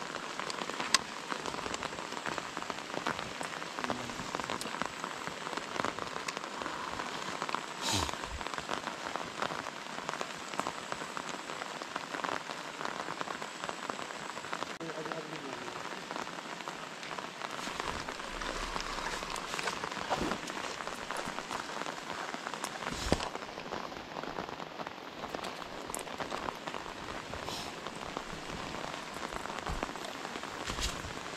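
Steady rain falling on a lake surface and the surrounding leaves, a continuous even patter with a few louder sharp taps about eight seconds in and again about twenty-three seconds in.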